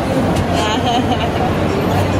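Indistinct chatter of several voices in a busy shop hall, over a steady low hum.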